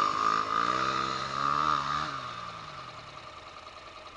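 Motorcycle riding away across sandy dirt: the engine note rises as it accelerates, then drops and fades into the distance about three seconds in.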